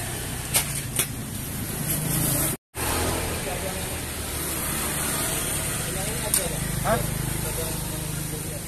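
Steady low background rumble with a few light clicks and faint voices. The sound drops out completely for a moment about two and a half seconds in.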